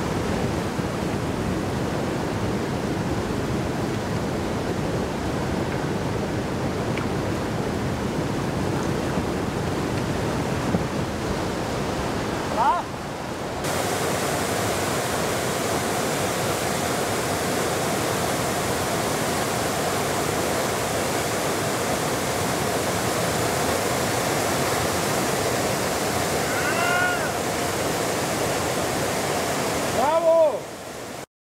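Loud, steady rush of whitewater rapids. A couple of brief voice calls sound over it, about 13 s and 27 s in.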